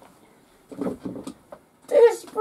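A quiet room with a short cluster of rustles and light knocks about a second in, from a person shifting and settling back into a chair.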